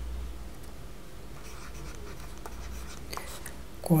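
Stylus writing on a tablet: faint scratches and light taps, over a steady low hum. A voice starts just before the end.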